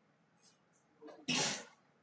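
A person sneezing once, a short sharp burst a little past halfway, just after a quick intake of breath.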